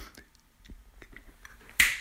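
A pause in a man's home-recorded narration: a few faint clicks, then a quick breath in near the end just before he speaks again.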